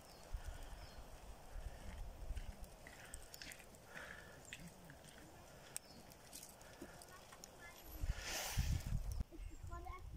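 Faint outdoor handling noise: low bumps and scattered small clicks, with a brief rush of noise about eight and a half seconds in.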